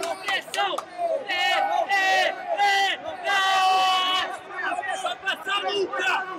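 Men shouting loudly over an arena crowd: a string of short yells, then one long held shout a little past the middle, the kind of shouted corner instructions heard at a grappling match.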